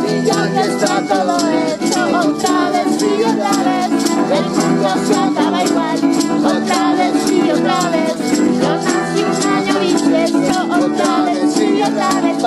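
An acoustic band playing a song: strummed guitars and a melodica melody, with a shaker ticking out a steady beat.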